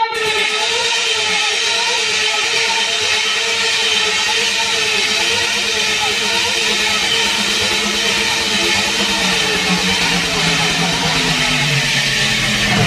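Techno DJ mix in a breakdown: a loud, steady wash of synthesized noise with a faint held tone over it and little or no kick drum, the bass coming back in near the end.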